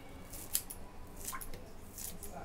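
Fresh coriander leaves rustling and crackling as a hand drops them into a plastic bowl of flour and sliced onions, a few short crisp crackles with the sharpest about half a second in.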